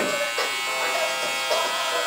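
Electric hair clipper running with a steady buzz.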